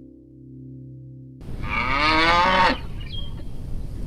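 The last held note of acoustic guitar music fades out. About a second and a half in, a cow moos once over outdoor background noise, a call of about a second that drops in pitch at its end.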